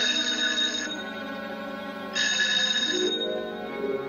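A telephone bell ringing twice, each ring about a second long and about two seconds apart, left unanswered. A low orchestral film score plays beneath it.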